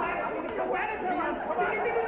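Voices talking over one another with no clear words, as in a live TV comedy sketch.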